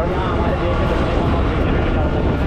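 Steady rumble of wind buffeting and engine and road noise from a two-wheeler being ridden along a road, heard at a microphone on the rider.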